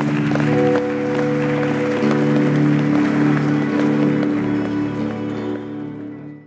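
A live rock band's electric guitars and keyboard hold a loud, sustained closing chord that shifts slightly about two seconds in and eases off a little near the end. Audience applause runs underneath.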